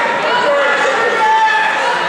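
Spectators shouting over one another, several voices at once, echoing in a school gym.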